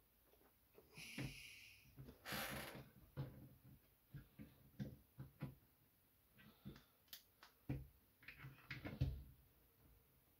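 Faint, scattered clicks and taps of a plastic action figure being handled and posed on a wooden shelf, with a person's breaths between them, one at about one second and a louder one around two and a half seconds in.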